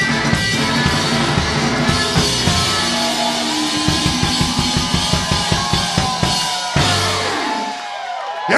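Live rock band with drum kit and upright bass playing the close of a song: fast, even drum strokes, then a final hit about seven seconds in, with the last chord ringing out and fading.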